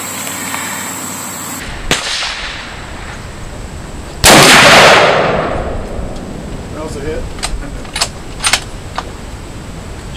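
A single .30-06 rifle shot from a Winchester Model 70 bolt-action rifle about four seconds in, very loud and sudden, with a long echoing tail. A few short sharp clicks follow near the end.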